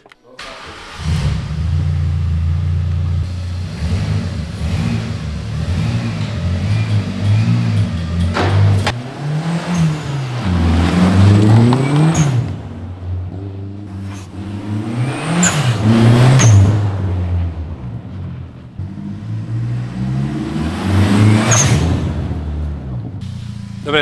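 Volkswagen Golf's turbocharged four-cylinder engine starts about a second in, jump-started from a small portable booster pack, and runs steadily. From about eight seconds in it revs up and down again and again as the car slides through snow.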